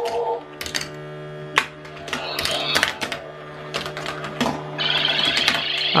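Motorized marble run toy running with its vortex launcher switched on: a steady electronic hum and tone-like space sound effects, with marbles clicking sharply on the plastic track pieces. A warbling higher sound effect comes in near the end.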